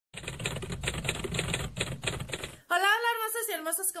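Rapid typewriter clacking, a dense run of keystrokes that stops abruptly about two and a half seconds in, followed by a woman's voice starting to speak.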